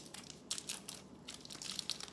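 Plastic wrappers of small Snickers candy bars being torn open and crinkled by hand: irregular, sharp crackles.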